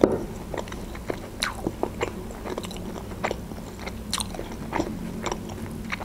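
A person biting into and chewing a fried pirozhok (Russian fried pie) close to the microphone, with wet mouth clicks and smacks at irregular intervals. The bite at the very start is the loudest sound.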